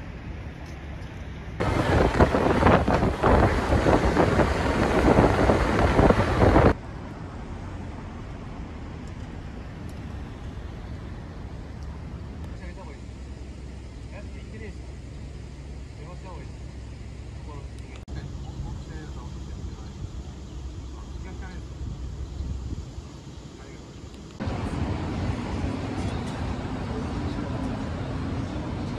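City street ambience: passing traffic and a steady background hum at a street intersection. About two seconds in, a loud rushing noise sets in for about five seconds and cuts off suddenly. Near the end the sound gets louder again.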